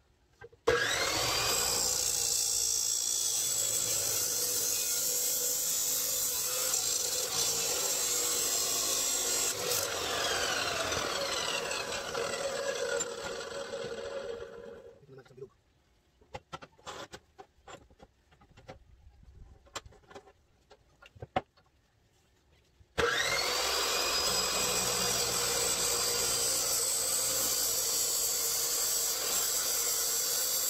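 Ingco 355 mm abrasive cut-off saw starting with a rising whine and running as its Ingco cut-off disc cuts stainless steel pipe, then winding down with a falling whine about halfway through. A few seconds of quiet follow with scattered clicks and knocks as the pipe is handled, then the saw starts again with the same rising whine and cuts once more.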